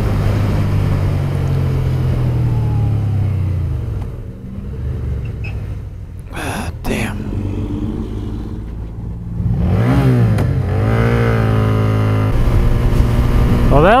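Motorcycle engine running under way; it eases off about four seconds in. Near ten seconds the engine revs up sharply and stays high, freed by a shift put into neutral by mistake.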